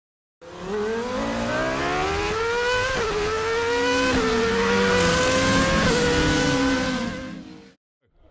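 A car engine accelerating hard through the gears: its pitch climbs, drops back at each of three upshifts, and the sound fades out near the end.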